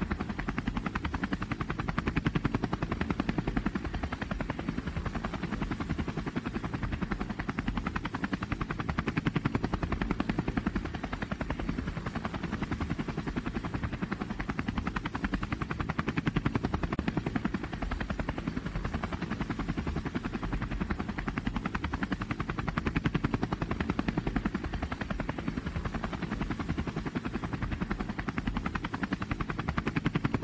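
DJI Phantom quadcopter's motors and propellers buzzing steadily in flight, a low, fast-pulsing drone heard from the camera on board.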